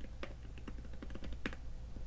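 A quick run of keystrokes: typing on a keyboard, faint, sharp clicks a few per second.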